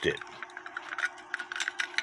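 Quick, irregular light clicks and rattles as a small Lux Pendulette cuckoo clock is handled and turned over in the hand, over a faint steady hum.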